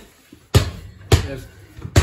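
A mini basketball bounced three times on a hard surface, sharp slaps a little under a second apart.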